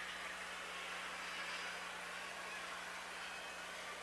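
Faint steady hiss with a low, constant electrical hum: the background noise of a radio broadcast feed between calls.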